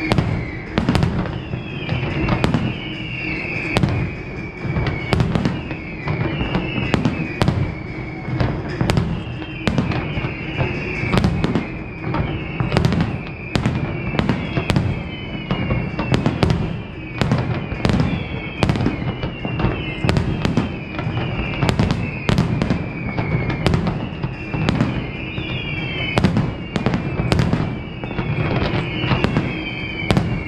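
Fireworks display: a continuous run of aerial shells bursting, one to three sharp bangs a second, with a falling whistle-like tone that recurs every second or two.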